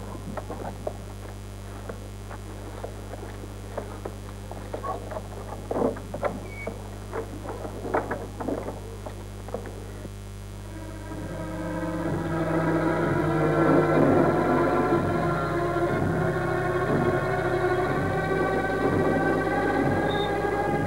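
Old film soundtrack with a steady low hum. Scattered light clicks run through the first half. Then the background score swells in about halfway through with sustained string- and organ-like chords and carries on.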